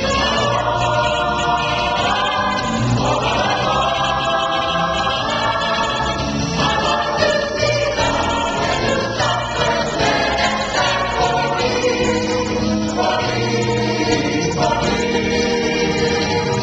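Mixed adult church choir singing a gospel song in sustained harmony, with a woman singing lead into a handheld microphone.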